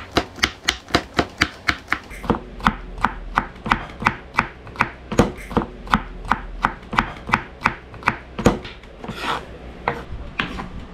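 Chef's knife dicing cucumber on a bamboo cutting board: quick, even strikes of the blade on the board, about three to four a second, with a brief scrape near the end.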